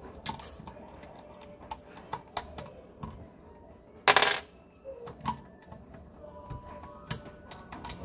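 Scattered small plastic clicks and knocks from a gloved hand handling a garbage disposal's black plastic discharge elbow. About four seconds in there is a louder brief rustling scrape as the gloved arm brushes close past the phone.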